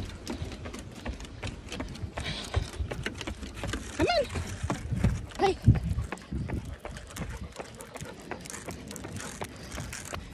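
Running footsteps on pavement with a leashed dog trotting alongside, a fast run of thuds and clicks. A short rising vocal sound comes about four seconds in, and a shorter one about a second later.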